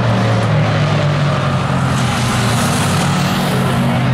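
Hobby stock race cars lapping the oval, their engines a loud, steady drone, with the noise swelling for a moment about two seconds in.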